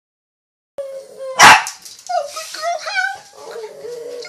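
A dog howling with its head raised: a held note that then wavers up and down in pitch. One short, very loud sharp sound comes about a second and a half in.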